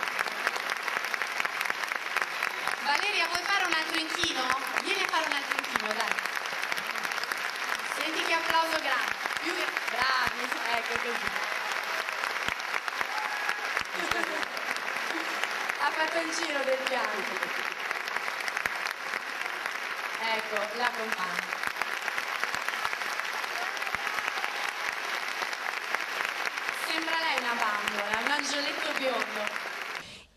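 A large theatre audience applauding steadily, with voices heard over the clapping.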